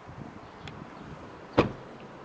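A Hyundai i20 hatchback's rear door is swung shut and closes with one loud thud about one and a half seconds in, after a few faint knocks of the door being handled.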